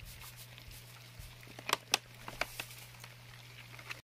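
Plastic packet of powdered food crinkling as it is tipped and shaken out over a food dish, with a few sharp crackles about two seconds in, over a faint steady low hum.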